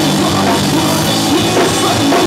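Punk rock band playing live and loud: electric guitar, electric bass and drum kit, with a voice singing over them.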